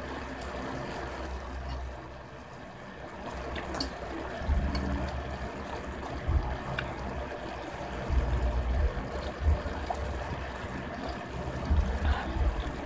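A person eating ramen noodles: slurping and chewing, with a few light clicks of a fork and spoon against the bowl, over a low rumble that comes and goes.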